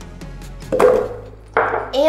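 Frozen strawberries tipped into a plastic blender jar: two thuds under a second apart, over background music.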